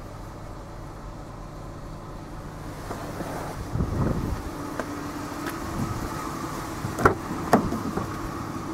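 A steady low hum inside a parked SUV, with rustling movement noise about halfway through and two sharp clicks near the end as the cabin and rear door are handled.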